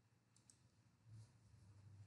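Near silence: quiet room tone with a couple of faint clicks about half a second in, typical of a computer mouse being clicked.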